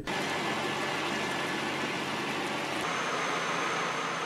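Steady machinery noise, a motor or engine running at an even level, with a thin high whine joining in about three seconds in.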